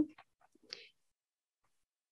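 A pause in a woman's speech: her word ends at the very start, then near silence with a short faint breath about three-quarters of a second in.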